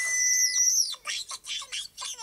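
A cartoon character's very high-pitched squealing scream, held with a slight waver and dropping away just under a second in. It is followed by quick, squeaky vocal sounds.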